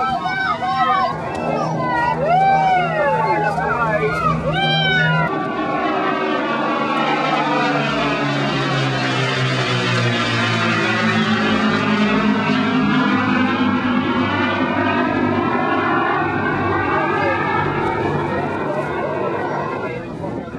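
Piston engines of a Lancaster bomber flying in formation with a Spitfire and a Hurricane, a loud, steady propeller drone that swells as the formation passes overhead about halfway through, its pitch falling as it goes by. Spectators' voices are heard over it in the first few seconds.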